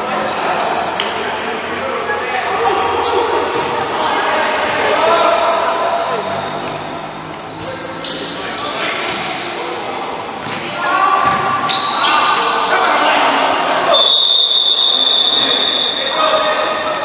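Futsal game in an echoing sports hall: players shouting to each other, with the ball being kicked and bouncing on the court. About two seconds from the end, a referee's whistle sounds in one long, steady blast as the ball goes out for a kick-in.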